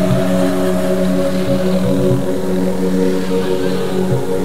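Background electronic music with sustained synth notes held steady, changing chord about four seconds in.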